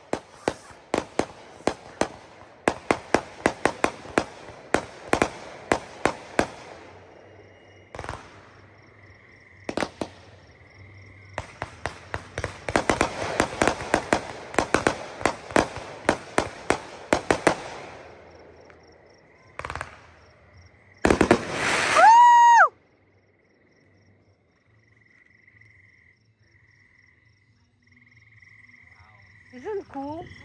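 Aerial fireworks bursting overhead in two long runs of rapid, sharp crackling bangs, with a few single reports between them. About two-thirds of the way through comes the loudest moment, a brief rushing burst ending in a falling tone. After it, frogs call faintly.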